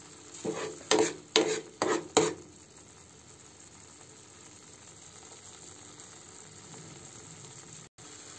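Thick tomato and red chilli chutney paste frying in a steel pan, stirred with a steel spoon: about four short scrapes of the spoon across the pan in the first two seconds, then a steady faint sizzle. The paste is cooking down and starting to release its oil.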